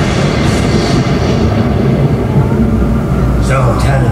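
Outdoor show soundtrack over loudspeakers: a loud, steady low rumble, with a brief voice near the end.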